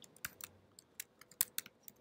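Computer keyboard typing: a short burst of about a dozen quick, uneven keystrokes.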